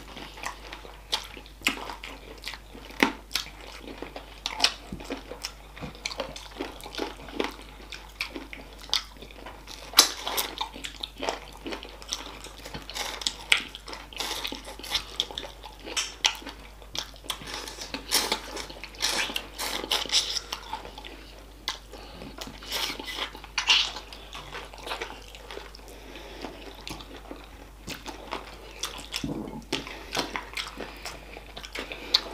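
Close-miked wet eating sounds from two people eating spicy chicken feet in sauce with their hands: irregular chewing, sucking on the bones and lip-smacking, heard as many sharp wet clicks and smacks, a few much louder than the rest.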